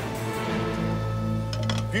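Background music: sustained tones, with a low bass note coming in about half a second in.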